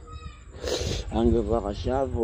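A man's voice moaning in drawn-out, wavering sounds with no clear words, after a short hissing breath.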